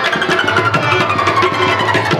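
Pashto folk music: a rabab being plucked and a harmonium playing together, with a melody line that slides slowly down in pitch, over a steady beat of hand-drum strokes.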